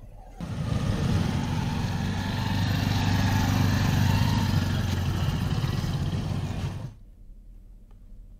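A motor vehicle engine running steadily, a low hum under broad noise. It cuts in abruptly about half a second in and cuts off about a second before the end.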